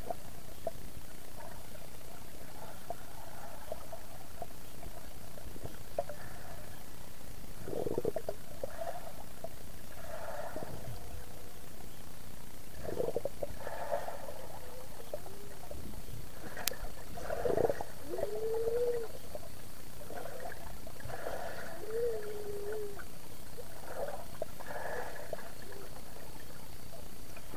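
Pool water heard through a submerged camera: a steady muffled hiss with irregular swishing and bubbling surges from a swimmer's strokes and kicks passing close by. A couple of short muffled pitched sounds come in the second half, and there is one sharp click.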